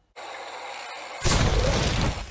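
A sudden, heavy explosion a little over a second in, with a strong low rumble, preceded by a steady low hiss. The blast trails off into a noisy rumbling decay.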